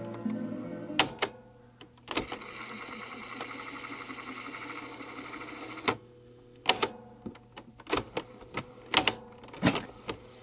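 Piano-key transport buttons on a Jeep WPSS-1A portable cassette recorder clicking and clunking as they are pressed: two clicks about a second in and a cluster of clicks over the last few seconds. In between, the tape deck runs steadily for about four seconds.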